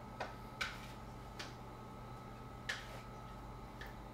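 Faint, sharp computer-mouse clicks, about five spread unevenly across the few seconds, over a low steady electrical hum.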